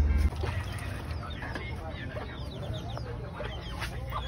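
Chickens clucking in a run of short, quick calls over a steady background. A loud low rumble cuts off just after the start.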